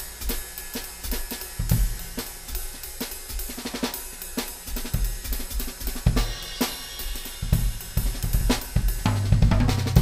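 Drum kit played in a groove with snare, bass drum and hi-hats under crashes and rides from a Paiste Formula 602 cymbal set. The cymbals wash bright over the beat, and low drum hits ring out near the end.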